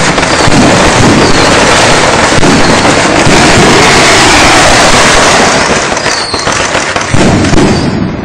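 A long string of firecrackers going off in a dense, unbroken, very loud crackle. It thins about six seconds in, flares up once more in a last flurry, then dies away at the end.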